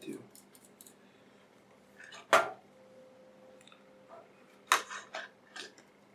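Small plastic and metal clicks and taps as the internal parts of a third-generation iPod are handled and fitted together. There is one sharp click about two seconds in, and a quick run of clicks about five seconds in.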